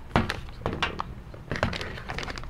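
Several short knocks and crinkles of black resealable coffee bags being handled and set down on a tabletop.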